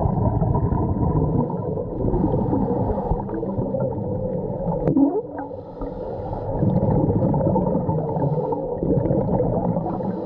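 Muffled underwater rumble and gurgling of scuba exhaust bubbles, heard through an underwater camera. It swells and fades with the breathing and eases off for a moment after a sharp click about five seconds in.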